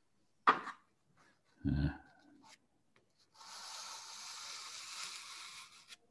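Hand and paper rubbing across a pastel painting on paper: a steady dry hiss lasting about two and a half seconds in the second half.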